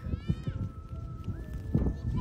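A young child crying in a thin, high, drawn-out wail that steps up in pitch near the end, over a low rumble on the phone's microphone.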